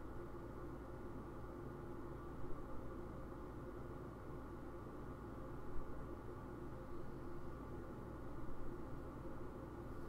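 Faint steady low hum of room tone, with no distinct sound events.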